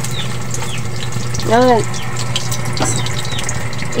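Steady sizzle and hiss of hot dogs frying in a wok on a portable butane gas stove, with small ticks and pops throughout.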